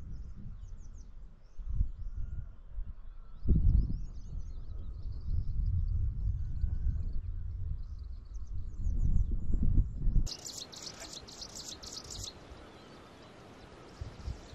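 Wind buffeting the microphone in irregular low gusts, with faint bird chirps above it. About ten seconds in the wind noise drops away abruptly and a loud burst of high, rapid chirping lasts about two seconds, then a quieter outdoor background.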